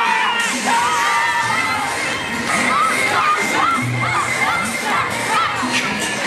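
A troupe of yosakoi dancers shouting calls together over their dance music, many voices rising and falling at once.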